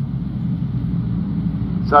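Speedway race cars' engines running at low speed as the field circles the dirt oval in formation before a restart, heard as a steady low rumble with a hum that fades about a second in.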